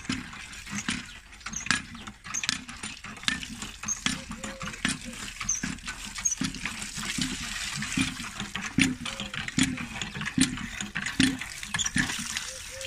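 Water from a hand pump gushing and splashing over grapes in a steel bowl and into a concrete trough, with the pump's handle knocking and creaking in a steady rhythm of strokes.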